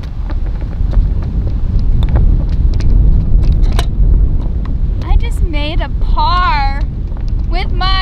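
Wind buffeting the microphone in a steady low rumble, with a few sharp clicks. From about five seconds in comes high-pitched, wavering vocalizing, a drawn-out squeal-like "ooh" rising and falling in pitch, repeated near the end.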